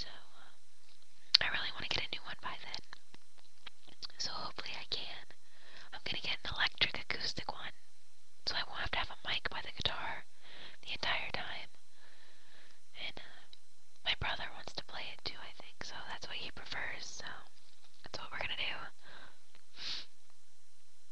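A person whispering in short phrases with brief pauses, and a sharp click about a second in.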